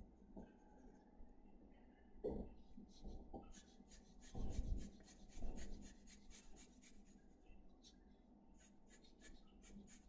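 Pencil shading on drawing paper: faint, quick, short scratching strokes, coming about three or four a second from about four seconds in. A few soft low thumps come before and among them.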